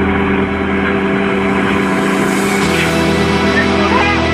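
Bobcat skid-steer loader's diesel engine running hard and steady as it climbs a trailer ramp, its pitch dropping about two-thirds of the way through, with background music mixed in.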